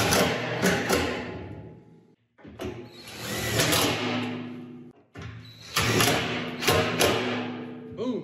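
Cordless impact driver with a magnetic nut driver running screws into the air intake's flange on a thin steel drum, in three runs of a couple of seconds each, each starting sharply and tailing off.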